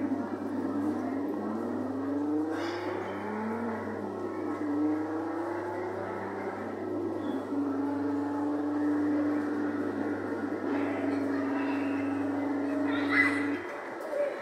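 Jolly Roger Spydero coin-operated kiddie car ride playing electronic car engine sound effects through its speaker, the pitch rising and falling like revving, then settling into a steady drone over a low hum. Near the end everything cuts off at once as the ride cycle stops.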